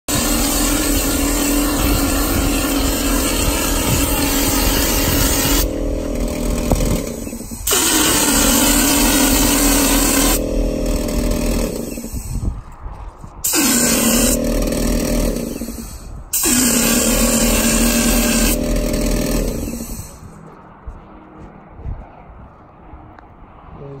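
Cork-coating spray rig running: a spray gun hissing over a steady motor hum, in four long bursts with brief breaks between. It falls much quieter about four seconds before the end.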